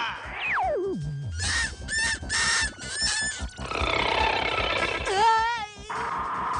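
Cartoon sound effects for a giant serpent: a long falling glide in the first second that sinks into a low rumble, then a run of short animal-like cries and a wavering cry near the end, over dramatic music.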